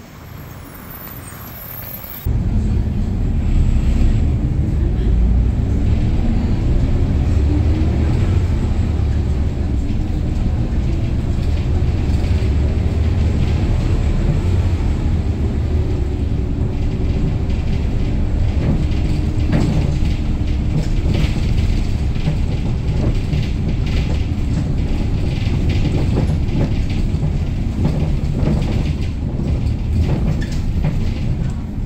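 Cabin sound of a 2013 Hyundai New Super Aero City F/L CNG city bus under way: its rear-mounted CNG engine drones with road rumble, rising in pitch as the bus pulls away and speeds up, then running steadily, with occasional cabin rattles. The engine is in good running order, without its former squeal. A quieter stretch of street sound comes first, for about two seconds.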